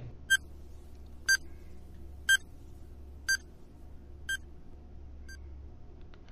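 Countdown timer sound effect: six short, high beeps, one each second, the last one fainter, over a faint low hum.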